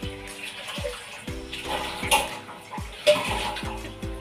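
Tap water running as steel utensils are rinsed by hand in a kitchen sink, with a couple of sharp clinks of metal, about two and three seconds in. Background music with a repeating bass runs underneath.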